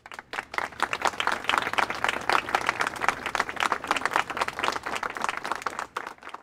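Audience applauding: many hands clapping in a dense, even patter.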